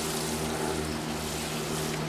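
Water falling from a plastic watering can onto mulch-covered soil, a steady hiss, with a steady low hum underneath.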